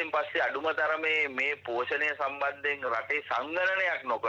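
Speech only: a voice talking without pause.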